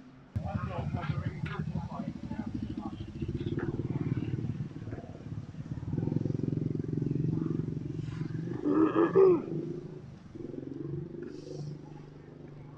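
A vehicle engine running steadily, with people's voices over it; a louder voice rises about nine seconds in.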